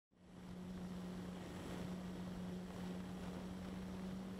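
Faint steady low hum with background hiss, starting a fraction of a second in.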